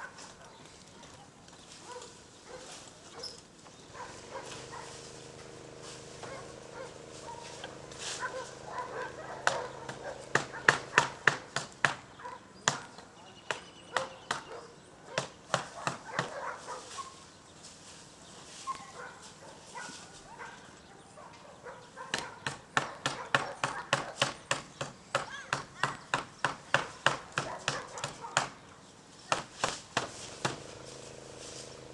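A dog barking over and over in two long, fast runs of sharp barks, several a second, the second run near the end. A steady low hum sits underneath in the first half.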